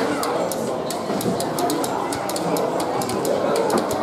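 Indistinct chatter of several spectators' voices overlapping, with scattered sharp clicks.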